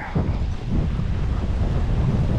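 Wind buffeting the microphone of a camera riding on a moving dog sled: a steady low rumble.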